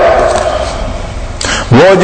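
A man's loud, amplified preaching voice. A short pause lets the end of his last phrase die away, then he breaks in with a sudden shouted word near the end.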